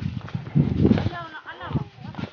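A hiker's footsteps on a mountain trail, rhythmic low thumps, with a short wordless vocal sound partway through.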